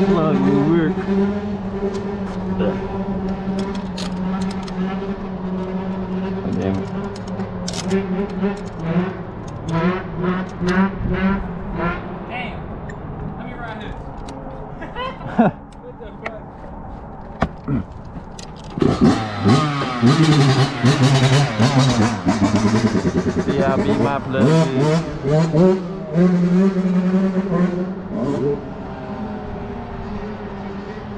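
Yamaha YZ125 single-cylinder two-stroke engine running. It holds a steady idle for the first dozen seconds, drops lower for a while, and from about two-thirds of the way in rises and falls in pitch as the throttle is blipped.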